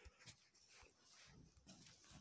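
Near silence: faint room tone with a few soft low thumps near the start.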